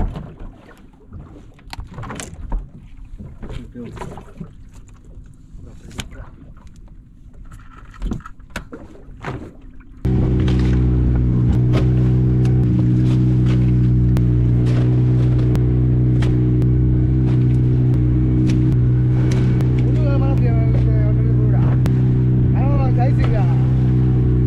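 Scattered knocks and clicks of fish being handled on a boat deck, then, about ten seconds in, a fishing boat's engine that cuts in suddenly and runs at a steady, even pitch, with voices over it near the end.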